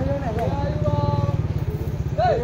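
Voices of spectators calling out over a steady low rumble of an engine running.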